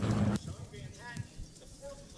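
Piston-engined race plane running loud at full power, cutting off abruptly about a third of a second in. After that there is a faint background with a few brief, indistinct voices.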